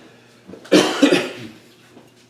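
A man coughing, two quick coughs about a second in, over a faint steady hum.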